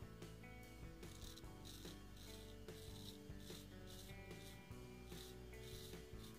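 Straight razor scraping through lathered stubble in a series of short, faint strokes. Faint background music with held notes runs underneath.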